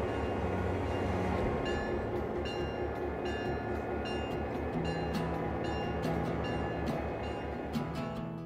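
A passenger train rolling past with a steady rumble, under background music with a regular ticking beat.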